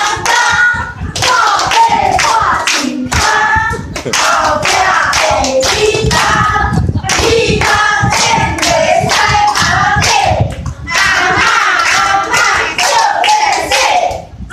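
A group of voices singing a song together, with hands clapping along in time.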